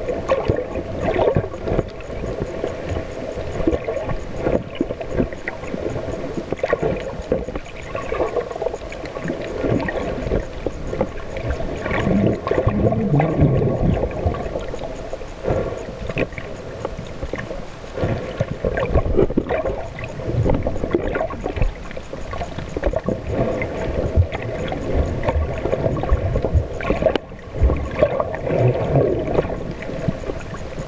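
Muffled underwater water noise: water sloshing and gurgling around the camera, surging irregularly, over a steady low drone.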